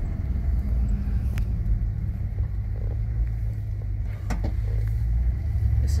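Inside the cabin of a 1960 Chrysler 300-F, its 413 V8 running at low speed with a steady low rumble. A couple of faint clicks come about a second and a half in and again about four seconds in.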